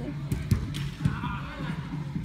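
A soccer ball kicked on artificial turf: a sharp thump about half a second in and a softer one about a second in, over background music and distant voices.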